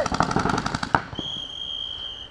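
Paintball markers firing in rapid strings, about a dozen shots a second, stopping about a second in; then a steady high-pitched tone sounds for about a second.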